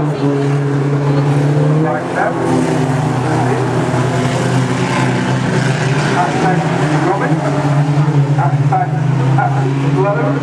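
Reliant Robin race cars running around the track, their engines making a steady drone with a rising rev in the first couple of seconds.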